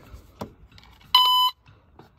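Fluke Networks Pro 3000 tone-and-probe kit giving one short, steady beep a little over a second in, as it starts transmitting its tracing tone. A light click comes just before it.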